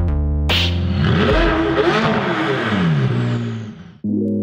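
Electronic music with a steady chord. About half a second in, a sports car engine fires up and revs, its pitch rising and falling several times before it fades out near the end.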